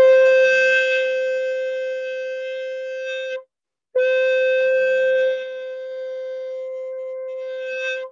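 Conch shell (shankha) blown in long, steady, unwavering blasts. One blast is held until about three and a half seconds in, then after a brief pause a second blast of about four seconds follows, a little quieter than the first.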